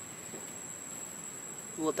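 Insect buzz, one steady unbroken high tone, over faint outdoor background noise. A short voice starts right at the end.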